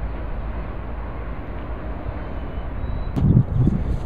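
Wind buffeting the microphone outdoors: a steady low rumble with hiss, then a sharp click about three seconds in followed by a few stronger gusts.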